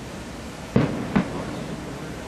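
Aerial fireworks going off: two sharp bangs about half a second apart, the first with a short echoing tail.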